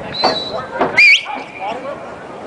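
Football players and onlookers shouting around a drill, with short 'ha' shouts and a loud, shrill, held cry about a second in over the background hubbub of the crowd.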